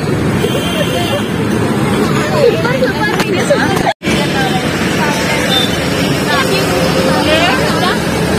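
Busy street noise: traffic running under people talking, with a brief break about four seconds in.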